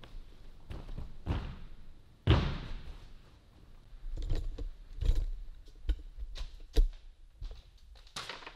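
Thuds of a person landing and stepping on a gymnastics spring floor, the heaviest about two seconds in with a short echo from the hall, followed by knocks and bumps of the camera being picked up and carried.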